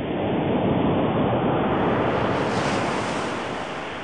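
Rushing sound of ocean surf, like a wave washing in: it swells over the first second, holds, then slowly fades away.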